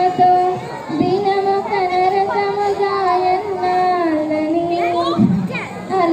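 A young woman singing solo into a microphone, holding long, drawn-out notes that dip in pitch about four seconds in, with a brief break for breath near the end.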